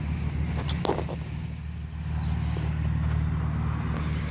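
1999 Bentley Arnage's V8 engine idling steadily, with a brief tap about a second in.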